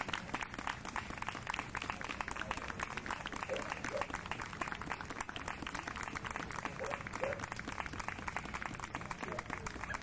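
Ringside spectators applauding, a dense patter of many hands clapping, with a few voices mixed in.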